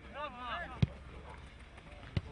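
Players calling out on the pitch, then a single sharp thud of a football being kicked a little under a second in.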